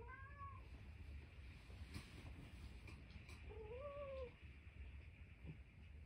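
Tuxedo cat giving two faint meows with a plush toy in its mouth: a short call at the start and a longer one, rising then falling, about three and a half seconds in.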